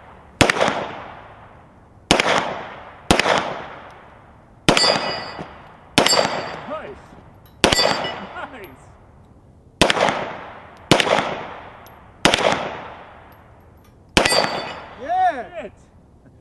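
Ten pistol shots fired one at a time, roughly one to two seconds apart, at a Texas Star steel target. Several shots are followed by a brief high ring as a steel plate is struck.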